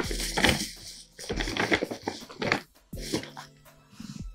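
Paper gift bag rustling as a hand searches through it, over soft background music.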